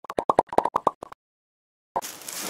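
A quick run of short popping sound effects, about ten pops in a second, that stops a little over a second in.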